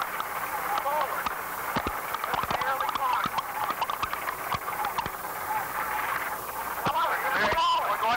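Cockpit voice recorder playback from a Boeing 737 in its final seconds: the flight crew's voices over the stick shaker warning of an impending stall, with clicks and hiss on the recording.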